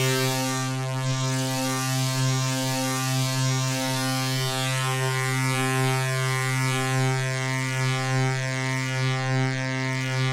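Cosmotronic Vortex complex oscillator sounding a steady low drone, a rich tone with many overtones. Its upper overtones shift and shimmer as its controls are worked.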